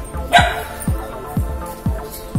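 A dog barks once, sharply, about a third of a second in, over background music with a steady beat of about two thumps a second.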